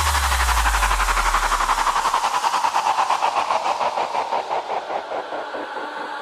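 Break in a house mix: a deep bass boom that falls in pitch and dies away over about two seconds, under a rapid, evenly pulsing noise sweep that slowly fades out.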